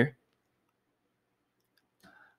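A man's spoken word ends right at the start, then near silence: room tone.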